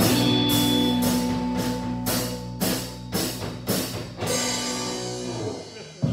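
Live rock band with electric guitars, bass guitar and drum kit playing a held chord under regular drum and cymbal hits. The hits stop about four seconds in and the chord dies away near the end.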